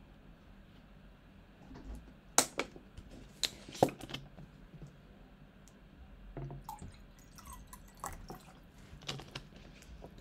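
A person drinking water: a few sharp clicks about two to four seconds in, with softer handling sounds afterwards.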